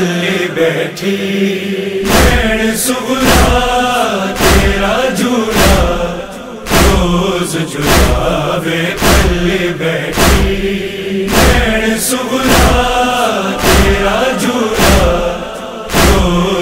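Chanted vocals of a Punjabi noha, a lament, over a steady percussive beat that strikes about every two-thirds of a second.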